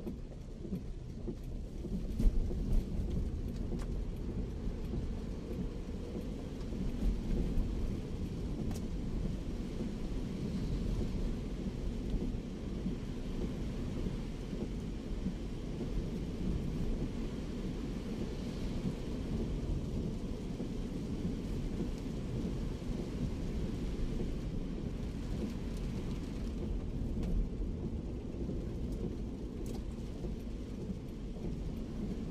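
Heavy rain on the roof and windscreen of a moving Daihatsu Terios, heard from inside the cabin over a steady low rumble of road and engine noise, with a brief louder knock about two seconds in.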